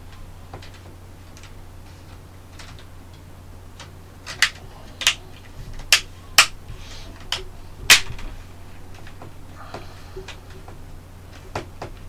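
Plastic clips on a Lenovo ThinkPad X230's display assembly snapping into place as they are pressed home by hand: a run of about six sharp clicks between four and eight seconds in, with smaller clicks around them. A low steady hum runs underneath.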